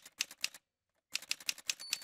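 Typing sound effect: keys clacking in two quick runs, the second ending in a short ringing ding near the end.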